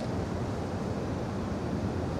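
Steady low rumble with a faint hiss of room noise picked up by the microphone during a pause in speech, with no distinct events.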